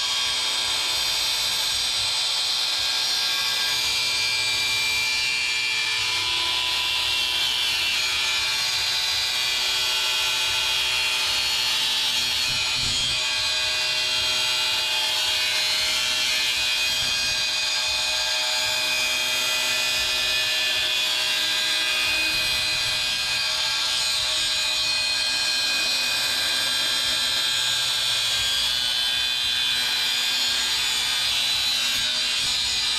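Angle grinder with a cutoff wheel cutting steel: a loud, steady whine with grinding, held in the cut without a break.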